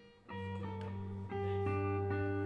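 Live band opening a song on guitar: ringing guitar notes that grow fuller and louder about a third of a second in, as low held notes join underneath.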